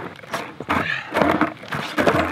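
Skateboard popped off asphalt in a failed kickflip attempt: several sharp knocks and clatters as the board hits the ground and lands upside down, with shoes slapping the pavement.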